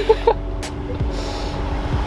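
Toyota Avalon TRD's V6 running at low revs, a steady low exhaust hum.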